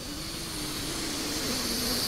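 A long, deep breath drawn in close to a microphone by a Quran reciter gathering air before the next verse. It is a steady rush of air that grows slightly louder and lowers in pitch toward its end, lasting about three seconds.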